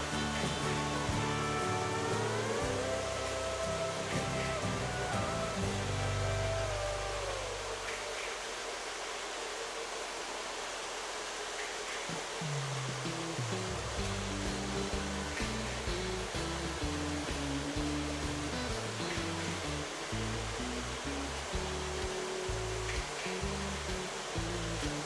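Several tinplate toy electric trains, a standard gauge engine among them, running laps together, giving a steady rolling hiss of wheels on track, with background music over it.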